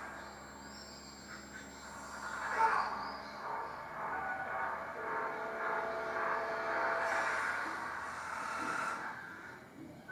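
Movie trailer soundtrack: music with long held tones over a hazy bed of sound, swelling about two and a half seconds in and fading away just before the end.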